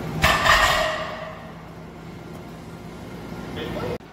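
A heavily loaded barbell set down on the gym floor: one loud clank of the iron plates, which ring and fade over about a second.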